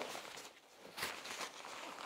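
Faint rustling of the folded KidCo Play-N-GoPod play tent's fabric and strap being handled, with two brief rustles, one at the start and one about a second in.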